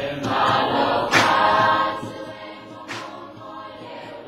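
A choir singing as intro music, the singing dropping much quieter about halfway through.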